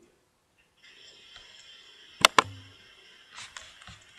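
Two quick computer mouse clicks in close succession near the middle, over a faint steady high-pitched whine and hiss.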